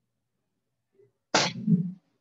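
A single sharp smack of a kick striking a hand-held kicking paddle, followed right away by a short laugh.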